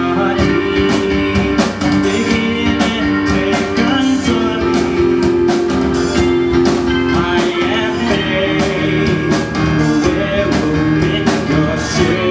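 Live rock band playing: electric guitars, keyboard and a drum kit keeping a steady beat.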